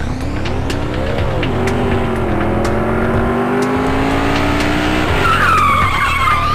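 A racing engine revving, its pitch rising and falling about a second in and then holding steady, with a tyre squeal near the end, over background music with a beat.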